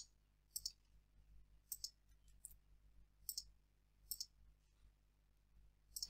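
Faint clicks of a computer mouse, about eight of them, several in quick pairs like double-clicks, spread over the first four seconds.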